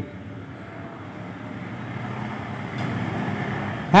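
A low, even rushing background noise with no tones in it, slowly growing louder through the pause.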